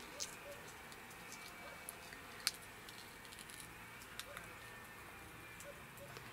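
Green pea pod being split open by hand: a few faint, crisp clicks over a quiet background, the sharpest about halfway through.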